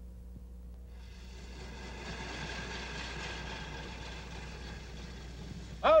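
Small yellow rail motorcar (track speeder) running along the rails: a steady engine and wheel noise that swells about a second in, over a low hum.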